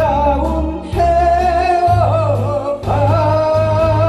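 Male trot singer holding long, sustained notes with a wide vibrato over a recorded backing track with a steady bass line.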